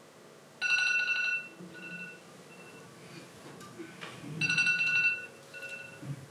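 Electronic ringtone sounding twice, about four seconds apart. Each ring lasts under a second and is followed by fading echoes.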